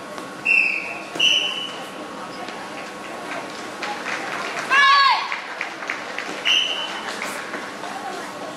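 Children shouting kiai during a karate kata: one loud shout about five seconds in that falls in pitch, and shorter high-pitched cries near the start and again later. Under them run the murmur of an echoing sports hall and small snaps of movement.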